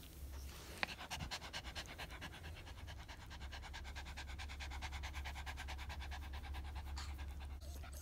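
Small terrier-type dog panting rapidly and steadily close to the microphone. A single sharp click comes just under a second in, and the panting breaks off shortly before the end.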